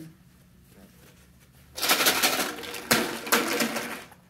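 Empty plastic water bottle crinkled and crushed in a hand, crackling loudly for about two seconds with a couple of sharp cracks, then stopping.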